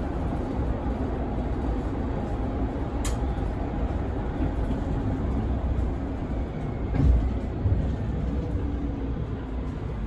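Cabin drive noise of a Mercedes-Benz Citaro 2 city bus under way: steady low engine and road rumble. A sharp click comes about three seconds in, and a louder thump about seven seconds in.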